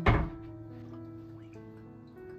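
A frying pan set down on an electric stove's solid hotplate: one heavy thunk right at the start, dying away quickly, over background piano music.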